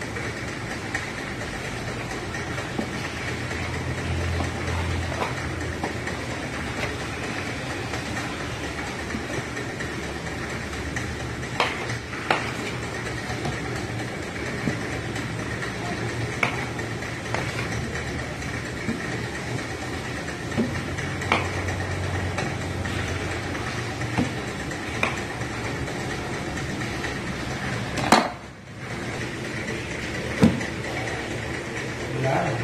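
A knife cutting a large block of stiff samosa dough, its blade knocking now and then on the wooden board, over a steady engine-like hum. A sharper, louder knock comes near the end.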